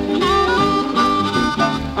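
Band music in a blues and swing style: a lead instrument holds one long high note over the bass and rhythm section, with no singing.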